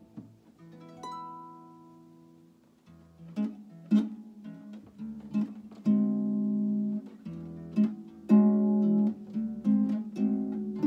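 Solo harp, improvised: a single plucked note rings and fades about a second in, then after a short lull plucked notes pick up, and from about six seconds in louder chords ring on.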